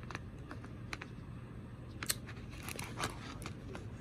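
Light, irregular clicks and taps of a hard plastic travel cutlery case and its plastic utensils being handled, over a low steady hum.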